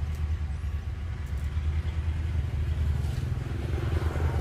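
A steady low motor drone, like an engine running, with no clear events above it.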